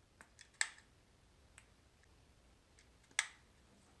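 A few short, sharp clicks and taps, two of them louder, about half a second in and about three seconds in, from handling a hot glue gun and pressing a glued object down onto the floor of a wooden mold box.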